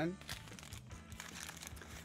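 Paper bag crinkling faintly as it is handled and a hand reaches in among hard sugar-coated biscuits.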